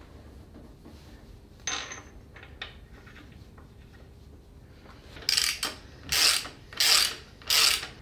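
Metal parts scraping and clicking as a Volvo B5254T's exhaust VVT unit with its timing gear pulley is worked onto the camshaft. There is one short scrape about two seconds in, then four short rasping bursts about 0.7 s apart near the end.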